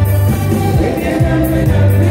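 A live highlife band plays with a male lead singer: bass guitar, drum kit, guitars and keyboard, with a prominent bass line that changes note about every half second.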